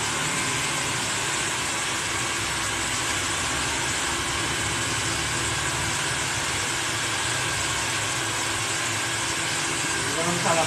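Handheld hair dryer running steadily at full blow on wet hair: an even rush of air with a faint motor whine.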